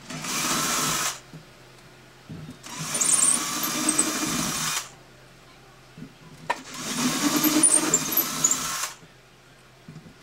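Cordless drill with an 11/64-inch bit boring bridge pin holes through an acoustic guitar's top, run in three short bursts with pauses between. The drill cuts under its own weight with hardly any downward pressure.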